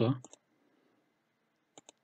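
Two quick computer mouse clicks in close succession near the end, otherwise a quiet room.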